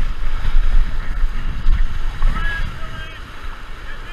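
Whitewater rapids rushing and splashing around an inflatable raft, with heavy buffeting of water and wind on the microphone.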